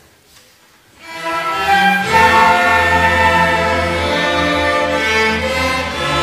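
School string orchestra begins to play about a second in after a hush, the violins entering first and low cello and double bass notes joining just after, swelling to full, sustained chords within another second.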